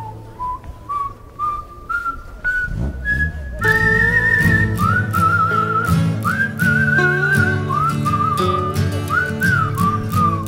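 Background music: a whistled tune climbs step by step, one note at a time. About three and a half seconds in, a fuller accompaniment comes in and the whistled melody carries on over it with a wavering vibrato.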